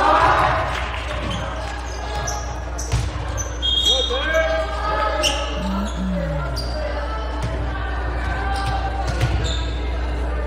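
Echoing gymnasium sound during a volleyball rally: a ball thudding and bouncing on the hardwood court several times among players' and spectators' voices, with a few brief high squeaks.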